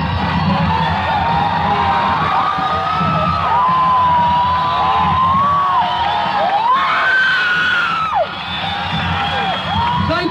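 Concert audience cheering, with many high screams and whoops over a steady roar. One long, higher scream rises about seven seconds in and drops off about a second later.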